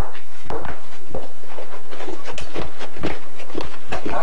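Footsteps on a hard floor: a run of short, uneven steps.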